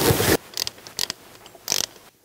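Rubbing and scraping of metal parts, then a few small metallic clicks: a bolt being fitted and started through the gasket at a turbocharger's oil drain tube flange.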